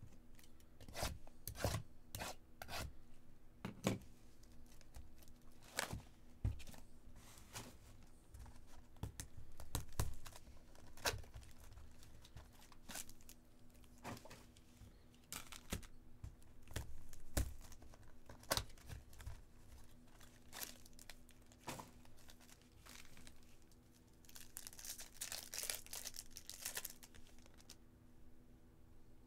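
Plastic shrink-wrap being torn off a baseball-card hobby box and the box opened, with irregular crinkles, rips and rustles of wrapper and foil packs. A longer, denser crinkling stretch comes near the end.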